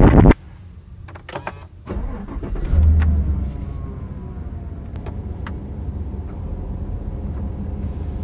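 Car engine started with a push-button: a few light clicks, then the engine catches with a loud surge about three seconds in and settles to a steady idle.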